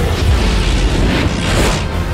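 Trailer sound design: a deep cinematic boom with a long, heavy low rumble under music, and a broad swell of noise near the end.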